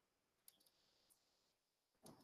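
Near silence with a few faint clicks of computer keys being typed: a quick cluster of three about half a second in and one more about a second in.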